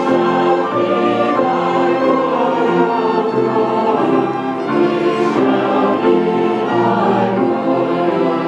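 A string ensemble of violins and cellos playing a slow piece, with long held notes and chords that change about once a second.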